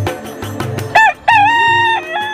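Rooster crowing about a second in: a short first note, then one long held note, over background music.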